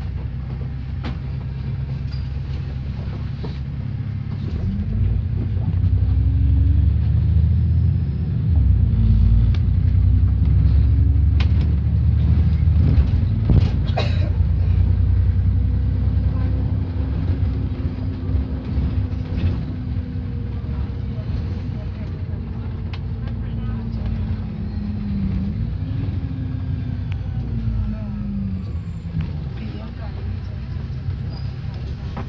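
Double-decker bus engine and drivetrain heard from inside the upper deck: a low drone whose pitch rises as the bus pulls away and picks up speed, loudest in the middle, then falls as it slows near the end. A few short knocks and rattles from the body come through.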